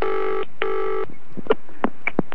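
Telephone ringing with the British double ring: two short rings close together. A few sharp clicks follow.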